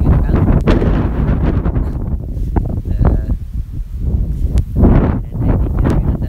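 Wind buffeting the microphone in a heavy low rumble, with a man's voice speaking at times over it.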